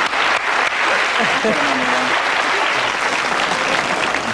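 A studio audience and panel applauding, a dense, steady round of clapping, with a voice briefly audible under it in the middle.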